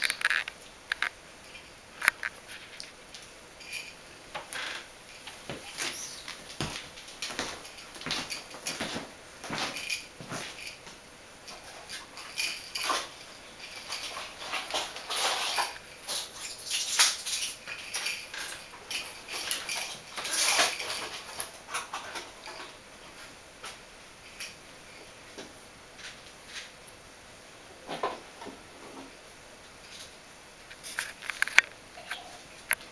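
Bichon Frisé puppies playing on a towel over a wooden floor: an irregular run of small scratches, clicks and scrapes from claws, paws and toys, busiest in the middle stretch.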